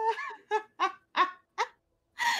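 A person laughing in a run of about five short bursts that trail off near the end.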